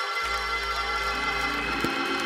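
Organ playing held chords, with a low bass note coming in near the start and the lower notes changing about a second in.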